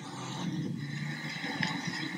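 Low, rumbling background noise of a handheld phone recording outdoors, with one light click about one and a half seconds in.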